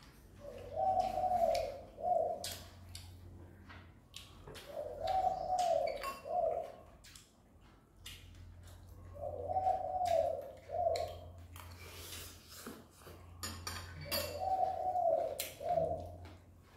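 A dove cooing four times, about every four and a half seconds; each phrase is a longer wavering coo followed by a short one. Light clicks of spoons against bowls between the calls.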